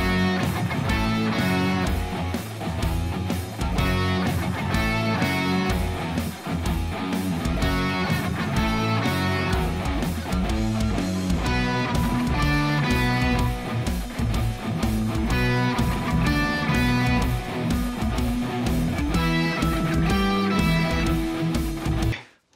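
Background music: a guitar-driven track with strummed electric guitar and bass over a steady beat, cutting off at the end.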